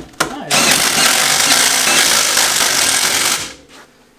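Impact wrench hammering in one loud burst of about three seconds, after a couple of sharp knocks.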